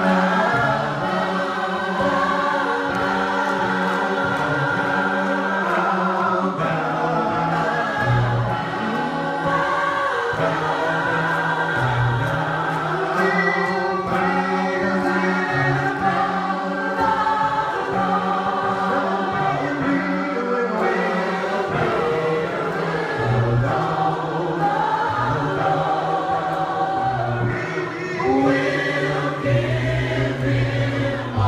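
A gospel choir singing a slow worship chorus, the voices holding long notes together.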